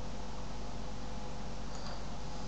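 Steady background hiss with a low hum: room tone, with a faint click near the end.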